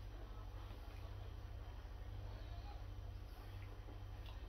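Quiet room with a steady low hum and faint chewing of a crunchy breaded chicken wing.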